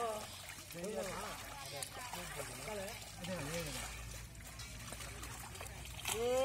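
Muddy water trickling and sloshing as hands and metal bowls scoop through shallow mud, under the scattered chatter of men's voices.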